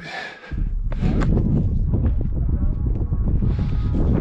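Wind buffeting the microphone: a loud, steady rumble that sets in about half a second in, with a few sharp clicks over it.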